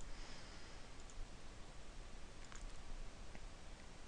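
A few faint computer mouse clicks over low, steady room hiss.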